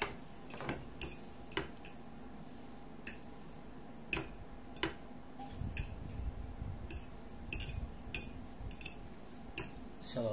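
Metal fork clinking and scraping against a ceramic plate while twirling noodles: a dozen or so irregular sharp clicks, with a low muffled noise for a couple of seconds in the middle.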